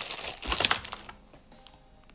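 A takeout bag rustling with sharp crackles as it is handled close to the microphone, dying away about a second in.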